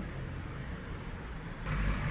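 Quiet room tone: a low steady rumble under a faint hiss, with a short rise in noise near the end.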